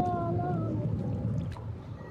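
A person's voice holds a drawn-out, slightly falling note that trails off within the first second. A low, steady rumbling background follows and gradually fades.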